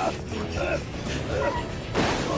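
Film soundtrack: music over a low rumble, with short high yelping cries that rise and fall in pitch several times.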